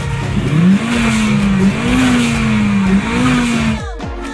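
Acura RSX and Mercedes-Benz E55 AMG pulling away side by side. The engine note climbs steeply about half a second in, then stays high, rising and dipping a few times under a loud rushing noise. It cuts off suddenly just before the end.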